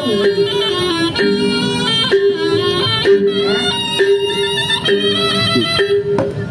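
Reog kendang music: a sustained melody moving in long notes, about one a second, over hand-drum strokes.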